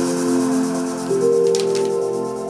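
Royalty-free instrumental music playing through a small portable speaker fed by a 3.5 mm aux cable: held chord notes, with the chord changing about a second in.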